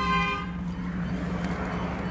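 Inside the cabin of a 2011 GMC Denali with the 6.2 V8 on the move: a steady engine drone and road noise. A steady horn-like tone fades out in the first half-second.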